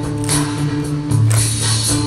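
Live rock band music recorded from the arena audience: a repeating low bass line under held tones, with sharp percussive clicks about twice a second.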